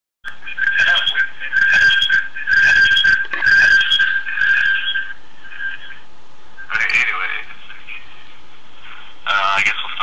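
A man's voice heard through a distorted, thin-sounding microphone, with a steady high tone running under the words in the first few seconds.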